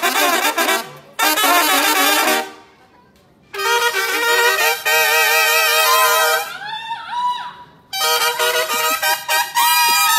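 Trumpets and trombones of a brass band playing loud, short phrases with brief pauses between them, falling silent for about a second around three seconds in. Several notes bend in pitch about seven seconds in.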